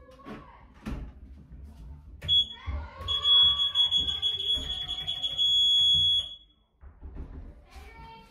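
Elevator emergency alarm buzzer sounding a loud, steady, high-pitched electronic tone: a short blip, then one held for about three seconds before it cuts off. A few knocks and thumps come before and under it.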